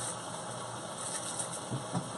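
Sliced pork belly frying in a hot sauté pan, a steady sizzle.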